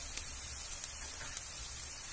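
Chopped onions and green chillies frying in oil in a kadai: a steady, soft sizzling hiss with a few small crackles.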